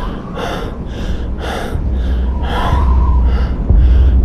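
Quick, heavy human breaths, about two a second in a steady rhythm, over a low bass drone that swells louder in the second half.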